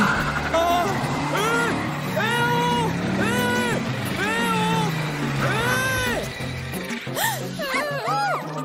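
A cartoon character's voice crying out "whoa" over and over, about six drawn-out calls in a row, over background music.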